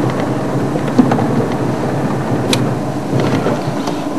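Safari vehicle driving on a bush track: steady engine and road rumble, with a couple of knocks from the vehicle about one and two and a half seconds in.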